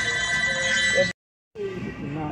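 A steady, high electronic ringing tone, several pitches held together, with voices talking under it. It cuts off abruptly about a second in, and after a short silence background music starts with voices.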